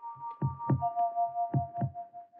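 Two heartbeat-like double thumps, about a second apart, over held steady notes in a film's background score.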